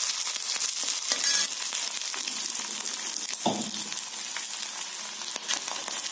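Oil sizzling steadily in a black kadai as green chillies, dried red chillies, curry leaves and peanuts fry for a tempering, stirred with a steel spatula.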